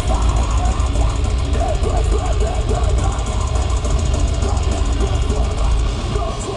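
A metalcore band playing live, distorted electric guitars and fast drumming, heard loud from the crowd through a camera microphone, muddy and heavy in the bass.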